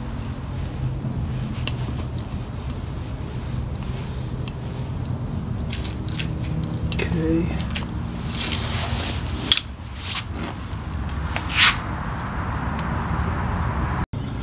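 Grease gun being worked: scattered sharp clicks from its mechanism, then a squishing hiss near the end as grease is pushed out, over a steady low hum.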